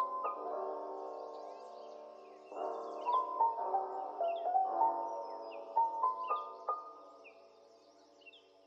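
Gentle instrumental background music with a melodic line, with short bird chirps over it. It fades down near the end.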